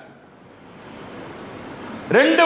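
A short pause in a man's speech, filled with a steady, even hiss of background noise that swells slightly toward the end.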